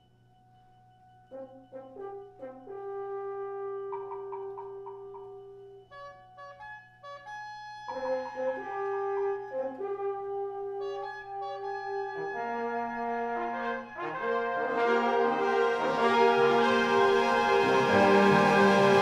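Concert band playing live. It starts very quietly with a faint held tone. Short brass figures and a held note come in about a second in, more brass phrases follow around eight seconds, and the whole band builds in a crescendo to a loud full sound near the end.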